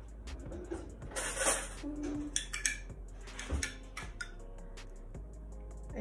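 A metal spoon clinking and scraping against a glass jar and a ceramic ramekin as marinara sauce is scooped out and spooned onto ricotta. The clinks are sharp and come many times.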